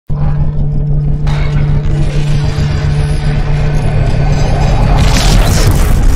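Cinematic intro sound design: a deep, steady rumble with a low drone starts abruptly. About a second in, a hiss joins it and grows, swelling into a bright whoosh near the end.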